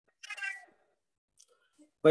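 A short, faint vocal sound lasting about half a second, a quarter second in, then near silence with a couple of faint ticks.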